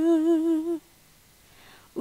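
A woman singing a Bugis-language song unaccompanied, holding a note with a slow vibrato that ends a little under a second in, then a pause of about a second before the next phrase.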